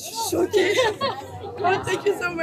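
People talking and chattering, voices overlapping.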